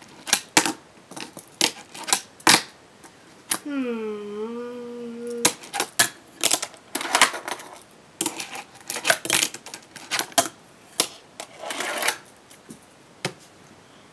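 Fingerboard clacking on a wooden fingerboard park: a scattered series of sharp clicks and taps, bunched into quick runs in the second half, as the small deck's tail and trucks strike the wood. A short hummed "mmm" about four seconds in.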